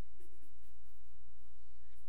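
Faint pen strokes scratching on a large paper pad as a quick drawing is finished, over a steady low hum.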